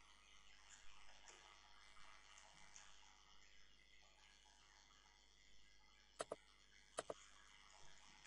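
Near silence with faint room hiss, broken by two sharp clicks about a second apart near the end, from computer mouse and keyboard use.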